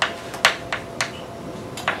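Chalk tapping and clicking against a blackboard as an equation is written: about five sharp taps, a quarter to half a second apart.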